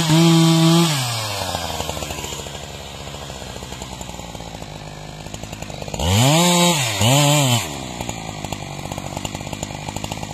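Husqvarna 372XP two-stroke chainsaw at full throttle finishing a cut through a log, then dropping to idle just under a second in. About six seconds in it is revved twice in two quick blips, each rising and falling in pitch, before settling back to idle.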